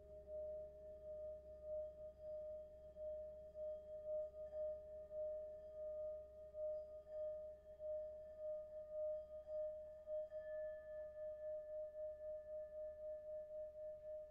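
Hand-held Tibetan singing bowl rubbed around its rim with a mallet, singing one steady tone with faint higher overtones. The tone wavers in loudness a couple of times a second.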